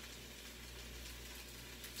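Faint room tone in a small room: a low steady hum under light hiss, with no distinct event.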